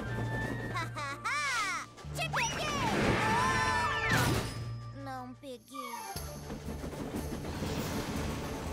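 Cartoon soundtrack: background music under a character's wordless cries and exclamations, with a brief burst of rushing noise about four seconds in.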